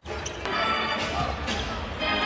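Live basketball court sound: the ball bouncing on a hardwood floor a few times, with short high squeaks from sneakers, over a low steady arena rumble.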